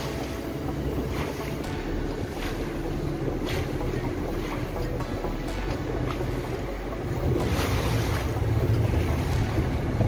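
A small boat's motor running under way, with water rushing past the hull and wind buffeting the microphone; it grows louder about seven seconds in.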